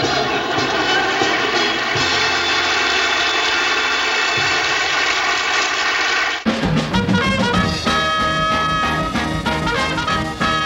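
A band with brass holds a long, steady final chord. About six seconds in it cuts abruptly to a brisk swing tune with brass and drums.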